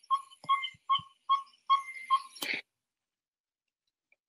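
A short, high whistle-like note repeated evenly about six times, roughly two or three a second, cut off by a sharp click about two and a half seconds in.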